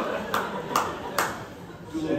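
A man's laugh at the microphone, then four sharp clicks or taps, about two and a half a second.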